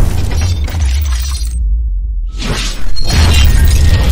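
Cinematic intro sound design over a deep bass drone: whooshing swells and shattering hits. About a second and a half in, the highs drop out and the sound goes muffled, then it sweeps back up into a loud impact about three seconds in.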